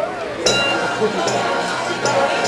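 Marching band percussion coming in: a sharp metallic strike about half a second in, with ringing bell-like tones, then light metallic hits every half second or so, over crowd chatter.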